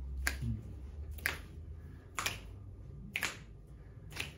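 Finger snaps keeping a slow, steady beat, about one snap a second, four in all, setting the tempo to snap along to.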